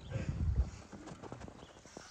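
A low thump near the start, then a quick run of light clicks or taps, several a second.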